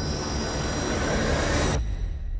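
Movie-trailer sound design: a rumbling noise swells in loudness and cuts off abruptly near the end, leaving a low rumble underneath.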